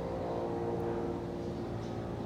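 A steady mechanical hum, as of a motor or engine running, holding several steady pitches at an even level.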